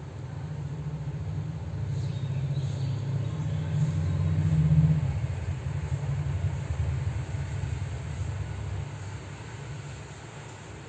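A low rumble that swells to a peak about halfway through and fades away near the end.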